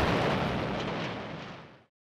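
Explosion sound effect ending a TV title sequence: a noisy blast that fades steadily away over nearly two seconds into silence.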